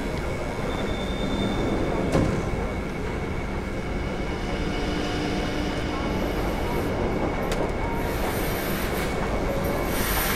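Steady mechanical running noise with a constant high whine throughout, and sharp clicks about two seconds in and again later on.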